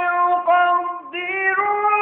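A man's voice reciting the Quran in the melodic tilawat style, drawing out long held notes. It breaks off briefly about a second in and resumes on a slightly higher pitch.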